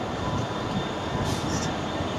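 Steady, distant rumble of an approaching Class 66 diesel-electric locomotive and its train, not yet close.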